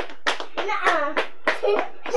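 Rhythmic hand claps, about four a second, with children's voices calling out in short bursts while they dance.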